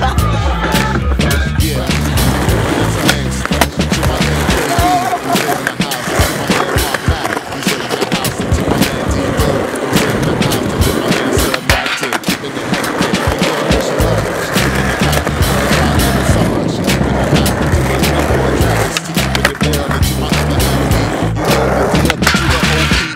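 Skateboard wheels rolling on concrete with sharp clacks of tail pops, rail contact and landings, over a music track with a steady heavy bass beat that drops out for several seconds in the middle.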